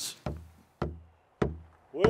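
Three slow, steady drum beats about 0.6 s apart, each a deep thud that rings briefly, opening a song. A singing voice comes in at the very end.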